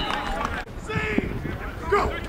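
Distant shouted voices of American football players calling out across the field, in short bursts over a steady low rumble.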